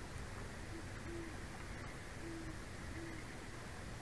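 An owl hooting: four short, low hoots spread over about two and a half seconds, over a steady background hiss.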